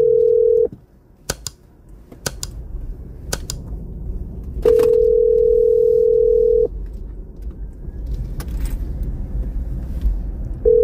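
Telephone ringback tone from a phone on speaker: a steady ring that cuts off just under a second in, then a second two-second ring about five seconds in, in the two-seconds-on, four-seconds-off pattern of a call still ringing and not yet answered. A few sharp clicks and a low rumble fill the gaps.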